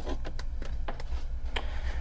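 Power cord and plug being handled and drawn along a counter: about half a dozen light clicks and taps, the sharpest about one and a half seconds in, over a steady low hum.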